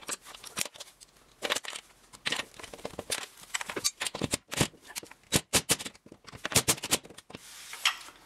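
Hand screwdriver driving short screws through a metal closer bracket into an aluminium storm door frame: irregular clicks and scrapes of the tip and screw, several a second.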